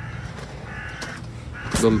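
A bird calling faintly in the background, with a low steady hum. A man's voice says one word near the end.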